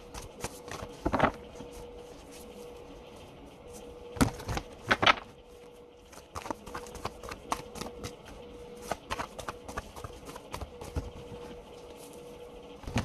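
Tarot cards being shuffled and handled: irregular clicks and snaps of card stock, louder about a second in and again around four to five seconds, over a faint steady hum.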